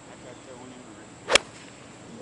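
A single sharp click of a golf iron striking the ball on a full approach shot, a little over a second in, over faint steady background noise.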